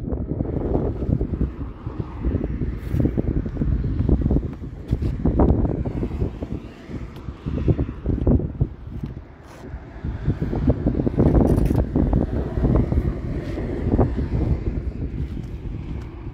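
Wind buffeting the microphone, a low rumbling noise that rises and falls in gusts, with a few faint knocks.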